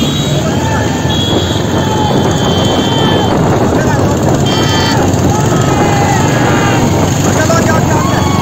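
Motorcycle engines running as the bikes ride alongside a buffalo cart, under a steady rushing noise, with men shouting. Brief high-pitched tones come about a second in and again about halfway through.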